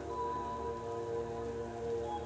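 Soft meditation background music: a steady held chord of synth tones over an even hiss.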